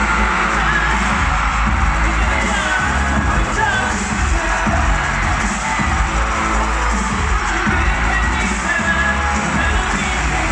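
Live K-pop concert music played loud through an arena sound system, with a heavy bass beat and some singing, recorded from the audience. Fans scream and cheer over it.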